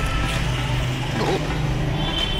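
Street traffic: a steady low rumble of road vehicles going by.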